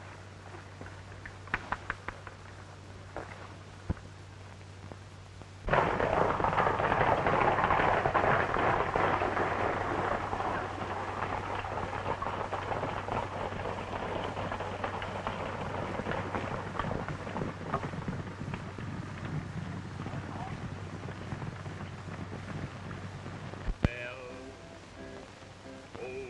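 A steady low hum with a few faint clicks. About six seconds in, the loud, dense clatter of a group of horses galloping starts suddenly and slowly fades.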